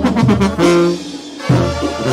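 Brass band music, trumpets and trombones over a bouncing bass line, in an instrumental stretch without singing; the band thins out briefly about a second in, then comes back in strongly.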